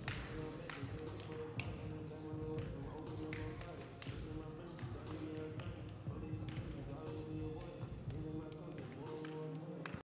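Basketballs bouncing on a gym floor, sharp irregular knocks under voices and music.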